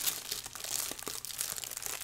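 Clear plastic wrapping crinkling and crackling as hands work at it around a small boxed item, in irregular small crackles.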